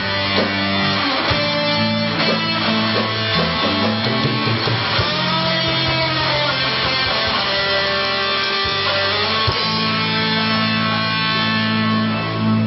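A live rock band with electric guitars playing, holding long notes with several pitch bends midway through.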